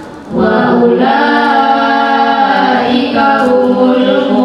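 Children's voices chanting Quran verses together in melodic Tilawati recitation over a PA system. After a short breath at the start, one long phrase is held and drawn out, and a new phrase begins near the end.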